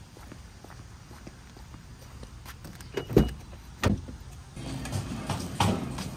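A car door shutting: two heavy thumps a little under a second apart, about three seconds in, after soft footsteps on pavement. Near the end comes the steady hubbub of a supermarket.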